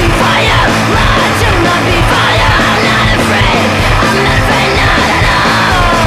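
Loud grunge/post-punk band playing, with yelled vocals over a dense, distorted rock backing.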